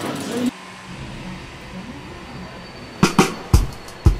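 A faint background murmur, then a quick run of about five sharp knocks or clacks starting about three seconds in, spread over roughly a second and a half.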